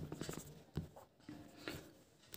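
Faint taps and short scratching strokes of a stylus writing on a touchscreen, a few separate strokes.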